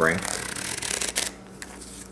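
A deck of playing cards (Theory11 Union, US Playing Card Company stock) sprung from hand to hand: a rapid flutter of cards for about a second, with a few sharp snaps, then near quiet.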